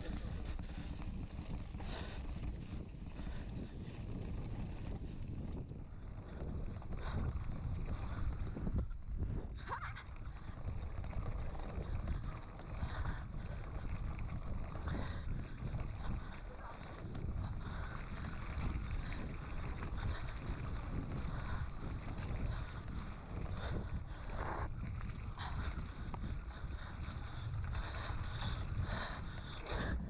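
Mountain bike riding fast down a gravel track: tyres rumbling over loose gravel and wind buffeting the camera microphone, with a few sharp knocks and rattles from the bike over bumps.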